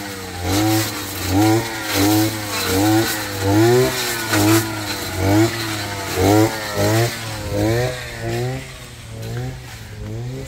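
Two brushcutter engines running, one revving up and down in a regular rhythm about twice a second as it cuts into thick brambles and weeds, over the steadier note of the other.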